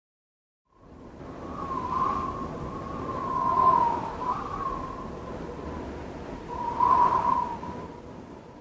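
A hissing noise with a wavering high whistle starts about a second in, swelling and fading several times, the loudest swells about halfway through and near the end.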